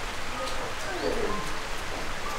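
Steady, even hiss of background noise, with a faint, low voice in the middle.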